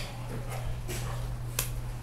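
A few short, sharp clicks, the sharpest about one and a half seconds in, over a steady low electrical hum.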